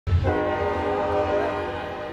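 A loud, sustained horn-like chord of several steady tones over a low hum. It cuts in suddenly at the very start and eases off slightly toward the end.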